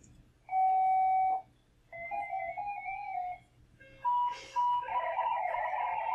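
Amateur-radio digital-mode modem tones from FLDigi software, heard through a ham radio's speaker. A steady tone lasts about a second, then a run of tones steps up and down in pitch. Two short beeps follow, and from about five seconds in comes a dense, many-tone data signal.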